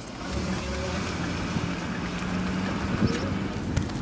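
A car running on the road: a steady engine hum with low rumble that comes up about a third of a second in and holds.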